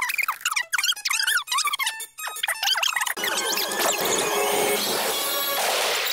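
Cartoon soundtrack: music mixed with a rapid run of short, high squeaks and clicks, then a steadier stretch of music from about three seconds in.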